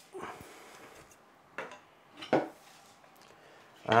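Light handling noises: a few soft knocks and rustles as a plastic drill guide and its wires are pulled off a control column and a part is set down on the bench.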